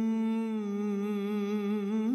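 A single wordless vocal note hummed and held steadily, with a slight waver in pitch, as a background track.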